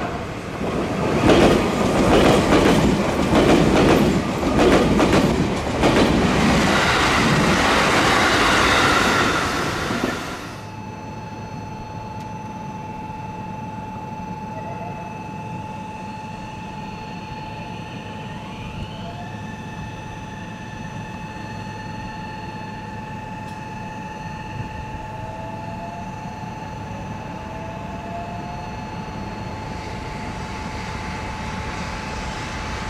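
A train running past on the adjacent track for about ten seconds, its wheels clacking over rail joints, then stopping abruptly. After that the waiting Meitetsu 1700 series electric train holds a steady high electrical hum, with a few short rising whines near the end.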